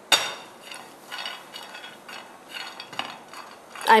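Cashews and almonds dry-roasting in a pan, being moved around: one sharp clink at the start, then scattered soft scrapes and rattles.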